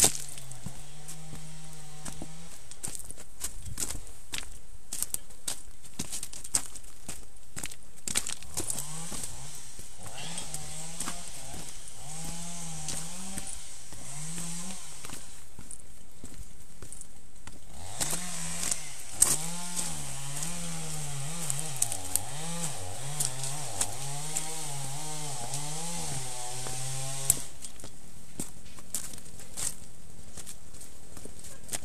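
Trials motorcycle engine worked with short blips of throttle, its pitch rising and falling as the bike picks its way over rocks, dropping away for a few seconds twice and stopping near the end. Over it, a clatter of sharp clicks and knocks from stones and the bike over the rough ground.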